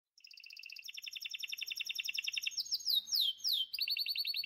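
Canary song: rapid high trills that swell in from nothing, broken in the middle by a few quick falling whistled notes, then trilling again.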